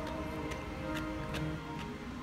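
Fukujinzuke (crunchy Japanese pickled vegetables) being chewed: faint crisp crunches about every half second, under steady background music.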